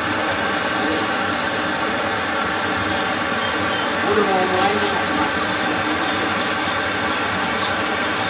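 Gas burner running with a steady, even rushing noise under a plate-steel wok, heating the bare steel to burn off its coating at the start of seasoning. A faint voice comes in briefly about halfway through.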